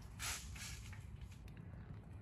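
Thin stream of old gear oil draining from a VW Atlas bevel box (front angle drive) into a drain pan, a faint trickle, with a short hiss about a quarter second in.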